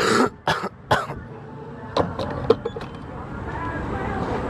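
A person coughs three times in quick succession, about half a second apart, followed about a second later by a few sharp light clicks and taps.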